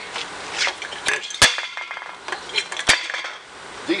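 Empty aluminium beer cans being handled, clinking and knocking against each other and metal, with a few sharp clinks, the loudest about a second and a half in and another near three seconds.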